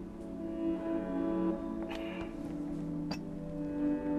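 Soft background music of held bowed strings, cello-like. Light clicks about two seconds in and again just after three seconds fit a porcelain teacup and saucer being picked up.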